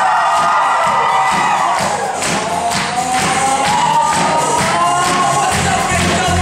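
Glee club singing a dance-pop number live over a loud amplified backing track with a steady beat of about two to three strikes a second and a long sliding sung or held line above it.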